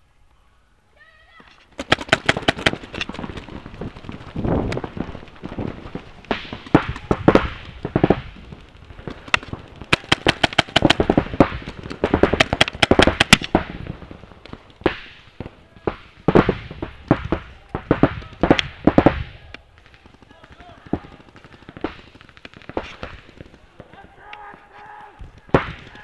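Paintball markers firing in rapid strings of shots, many overlapping, starting about two seconds in and thinning to scattered shots over the last quarter.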